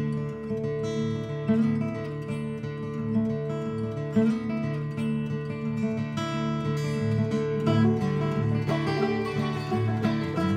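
Background music with strummed acoustic guitar.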